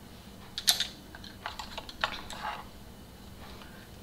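A few light clicks and taps of makeup brushes being sorted through and picked up, the sharpest a little under a second in, then a scatter of softer ticks over the next couple of seconds.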